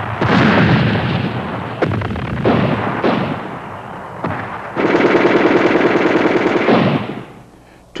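Battle sounds of gunfire: a loud gun blast with a long rumbling decay, a few separate shots, then a sustained burst of rapid machine-gun fire lasting about two seconds, starting a little past the middle.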